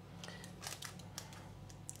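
A few faint, scattered clicks and taps of a kitchen utensil moving through a raw egg mixture in a baking tin as the ingredients are spread evenly.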